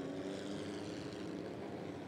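Vehicle engines idling at a steady pitch, a low even hum that neither revs nor changes.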